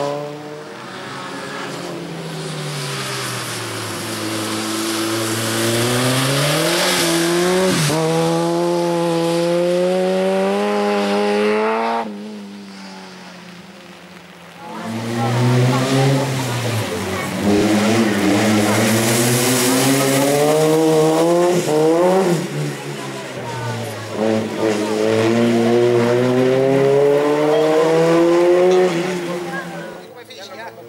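Racing hatchback's engine at high revs on a slalom run, its pitch repeatedly climbing and dropping with gear changes and lifts for the cone chicanes. It fades away about twelve seconds in, then returns loud a few seconds later, again revving up and down through the gears.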